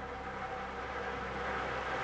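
Lottery draw machine running: a steady motor hum with the plastic number balls tumbling and rattling in its clear drum, getting slightly louder.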